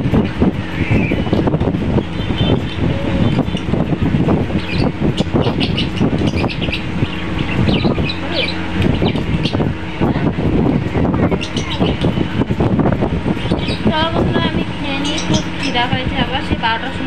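Indistinct talking throughout, over a steady low hum; a few high chirping sounds come in near the end.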